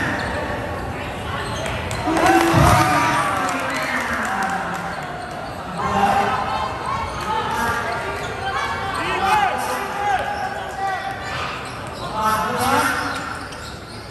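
A basketball bouncing on a gymnasium's hardwood floor during play, with a heavy thud about two and a half seconds in. Untranscribed shouts and calls from players and spectators echo in the large hall.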